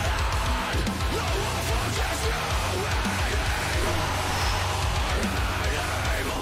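Heavy metal song playing: distorted electric guitars over a dense, heavy low end of bass and drums.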